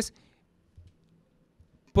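A man's word ends at the start, then a pause of near silence with faint room tone, and speech resumes just before the end.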